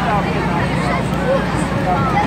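Children's voices chattering and calling out over one another, with no clear words, over a steady low machine hum.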